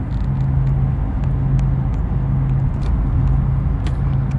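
A steady low mechanical hum over a rumble, dropping out briefly about once a second, with a few faint clicks.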